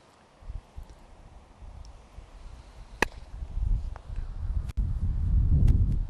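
A croquet mallet strikes a ball once with a sharp clack about three seconds in, followed by a fainter click about a second later. Wind rumbles on the microphone, growing louder towards the end.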